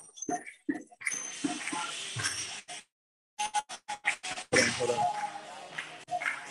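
Kirtan music, singing with percussion, heard in stuttering, breaking-up fragments, with a complete cut-out about halfway through: audio dropping out over a poor, laggy internet connection.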